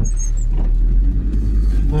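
Land Rover Discovery 2 heard from inside the cabin while driving: a steady low engine and road rumble on a wet road, with a brief high squeak near the start as the windscreen wiper sweeps.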